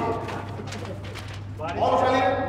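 Several people's voices calling out loudly, once at the very start and again in a drawn-out shout near the end, over a steady low electrical hum.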